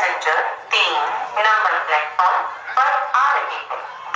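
Speech only: one voice talking with short breaks, in the manner of a railway platform announcement.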